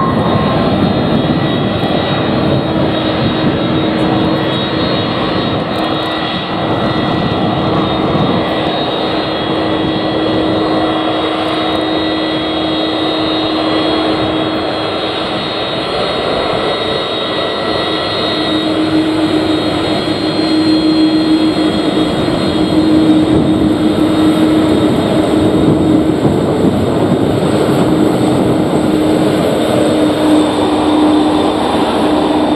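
Royal Australian Air Force Airbus A330 MRTT's jet engines running as the tanker rolls along the runway and taxis. The engines give a steady loud rush with constant held whines, growing somewhat louder in the second half.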